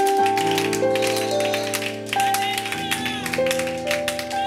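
Music: sustained organ-style keyboard chords, the held notes changing every second or so, with quick tapping or clapping over them.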